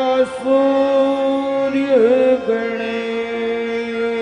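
Devotional bhajan music: a male voice holds long drawn-out notes, with the pitch dipping and bending shortly after the start and again about two seconds in, over instrumental accompaniment.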